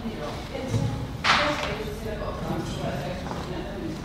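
A person speaking, with a low thud just before the one-second mark and a short, loud hissing burst just after it.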